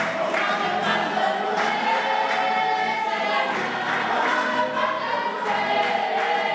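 Choir singing a hymn, many voices together, with sharp beats at a fairly even pace under the singing.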